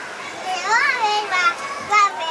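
Toddlers' high-pitched voices calling and babbling, with one long rise-and-fall in pitch in the middle.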